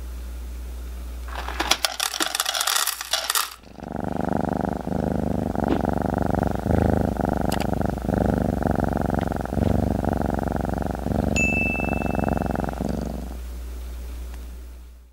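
Dry kibble clattering into a stainless steel feeder bowl for about two seconds, followed by a steady cat purr lasting about nine seconds, a purring sound effect.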